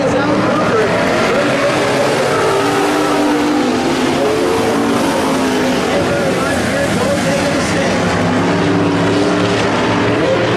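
Several dirt-track street stock race cars running hard around the oval, their engines' pitch rising and falling as they go through the turns and down the straights.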